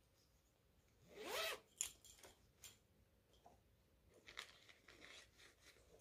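A zipper on a fabric project pouch being pulled open in one quick stroke about a second in, followed by faint handling rustles and clicks.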